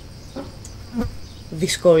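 Steady high-pitched insect buzzing in the background. A woman's voice starts speaking near the end.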